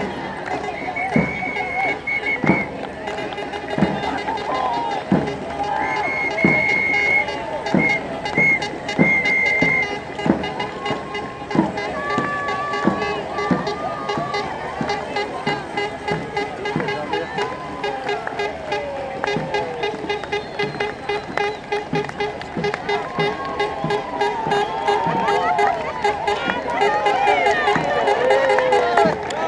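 Festive music with a steady drum beat, about one stroke a second, and a wavering melody over it, mixed with the voices of a crowd.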